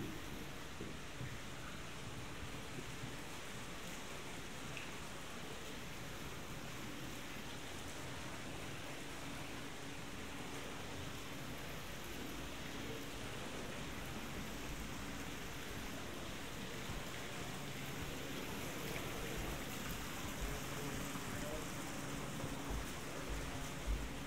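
Water from a courtyard fountain's spouts splashing steadily into its basin.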